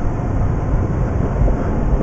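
Mazda RX-8 on the move, heard from inside the cabin: a steady low rumble of road and twin-rotor engine noise.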